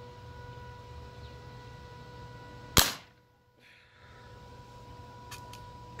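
A single sharp shot from a 5.5 mm Xisico XS28M air rifle, about three seconds in, over a steady background hum.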